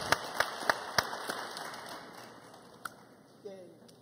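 Audience applause, the clapping thinning out and dying away over a few seconds.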